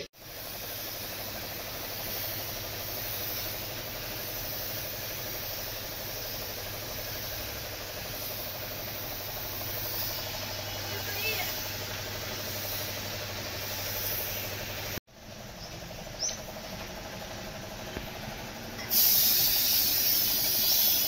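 Compressed-air paint spray gun hissing steadily over a low hum. The sound cuts off abruptly about three-quarters of the way in, and near the end a louder spray hiss starts as primer is sprayed.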